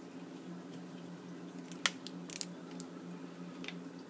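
Budgerigar preening, nibbling through its feathers with its beak: a few small sharp clicks, the loudest about two seconds in and a quick cluster just after, over a steady low hum.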